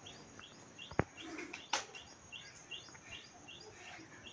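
A bird chirping over and over, short falling chirps about three a second, faint. A single sharp click about a second in.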